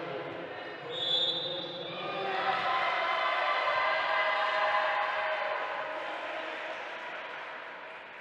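Spectators in a sports hall shouting and cheering during a wheelchair basketball game, swelling from about two seconds in and fading toward the end. A short, high referee's whistle sounds about a second in.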